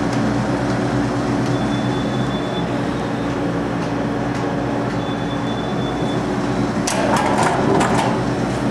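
Steady low machine hum, with a faint high tone coming in twice. Near the end there is a cluster of knocks and rattles.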